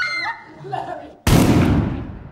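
A sudden loud crashing hit about a second and a quarter in, dying away over the next half-second: a horror-film jump-scare sting. Faint voice sounds come before it.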